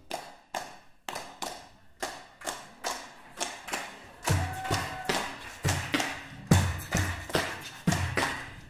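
Vocal percussion opening an a cappella choir arrangement: sharp clap-like hits in a steady beat, about three a second, joined about four seconds in by deep beatboxed kick-drum thumps.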